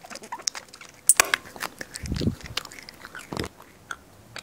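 Comic biting sound effects: a quick run of snaps and chomps, with a short low growl about two seconds in, standing for the toy Venus flytrap biting a finger.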